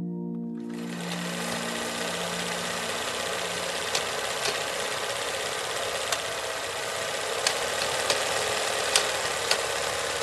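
Film projector sound effect: a steady mechanical clatter of a running projector, with scattered crackles and pops like old film, starting about half a second in. Soft music fades out under it over the first few seconds.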